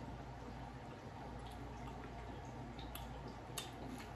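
A few faint wet clicks from hands picking cheese- and sauce-laden nacho chips off a tray and eating, over a steady low hum; the clearest click comes near the end.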